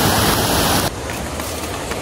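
Steady rushing outdoor noise that drops sharply about a second in to a quieter hiss.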